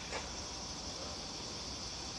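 Steady chorus of insects, a high, even buzz, with one brief faint knock just after the start.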